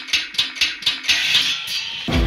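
Animated logo intro sound effects: a run of sharp, high ticks about four a second, then a hissing swell in the second half that leads into guitar music.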